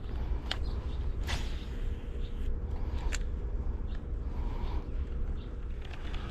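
Low rumble of wind buffeting the microphone outdoors, with a few scattered sharp clicks and rustles.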